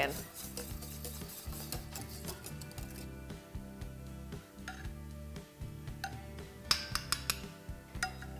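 Wire whisk clicking and scraping against a stainless steel saucepan of custard for the first few seconds, then a metal spoon clinking against glass dessert cups near the end, over steady background music.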